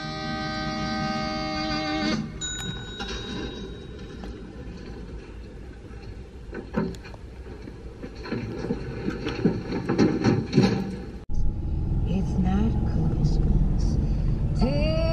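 A held musical chord for about two seconds, then softer music and voices. After a sudden cut late on, a low rumble with voices.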